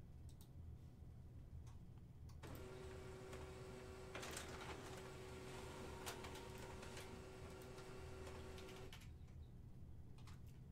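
HP printer printing a page: a faint, steady mechanical whine with paper-feed noise starts about two and a half seconds in and stops about a second before the end. A few mouse clicks come before it.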